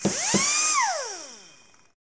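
Synthesized logo-sting sound effect: a whooshing sweep whose tones rise, hold, then glide down. A short low hit comes about a third of a second in, and it fades out near the end.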